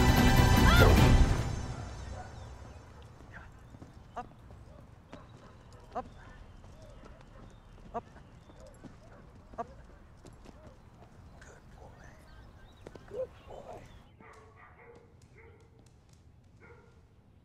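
Military working dog attack-training tussle, a German Shepherd on a decoy amid shouting, cut off after about a second and a half. Then a quiet stretch with a soft knock about every two seconds. Near the end, a dog makes pitched sounds in a kennel.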